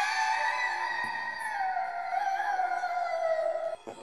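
A single long, wavering musical tone that slides slowly down in pitch and stops shortly before the end.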